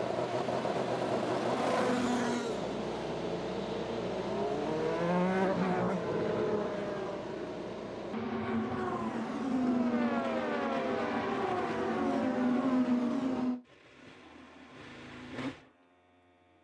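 IndyCar race cars' 2.2-litre twin-turbo V6 engines running through pit lane, several cars at once, their notes rising and falling as they pull away and pass. The engine sound cuts off suddenly near the end.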